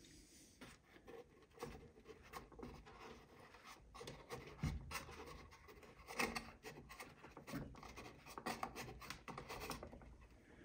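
Faint rustling and scraping of a cardboard packaging box being handled and lifted by hand, with light taps and a soft low thump about halfway through.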